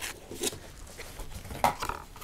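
Cardboard collectible boxes being handled and opened: light scrapes and taps, with one short, sharper sound near the end.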